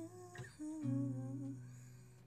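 A woman's voice holding and ending a soft sung note, then a strummed chord on a Yamaha acoustic guitar a little under a second in, left to ring and slowly fade.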